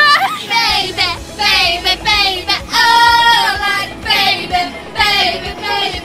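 Teenage girls singing a pop song together, with a long held note about halfway through, over a low rumble.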